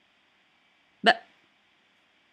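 A woman's single short, surprised exclamation, "bah", about a second in, with near silence around it.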